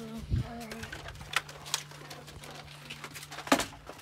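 A few sharp knocks and scuffs from people moving about in a small wooden shed, the loudest about three and a half seconds in, over a steady low hum.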